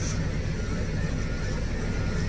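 Electric pet grooming clipper running with a steady, even low buzz as its blade is drawn down through a Scottish terrier's coat.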